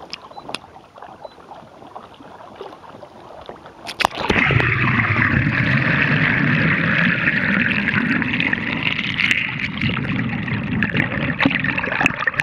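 Water slapping and sloshing against a Hobie kayak's hull at the waterline. About four seconds in, the camera goes under and a loud, steady, muffled rush of water flowing past the submerged microphone takes over.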